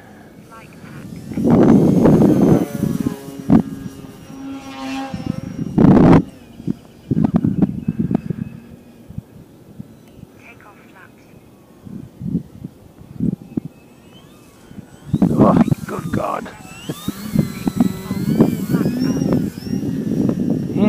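Gusty wind buffeting the microphone, over the thin whine of the RC plane's electric motor, which rises and falls in pitch as the throttle changes. A man's voice mutters in the last few seconds.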